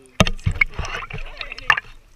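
Water splashing and sloshing right at the action camera's microphone, with a sharp knock just after the start and another near the end.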